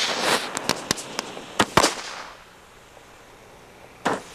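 Firecrackers going off on the ground: a fizzing burst, then a string of about six sharp bangs over the next second or so. The hiss dies away about two seconds in, and another burst goes off at the very end.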